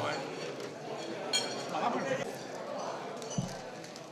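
Room sound of a gathering in a large hall with faint voices in the background. A single light clink rings briefly about a third of the way in, and a soft low thump comes near the end.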